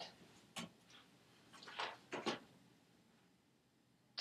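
Faint handling or movement noise: a few short soft clicks and rustles, most of them in a cluster about two seconds in.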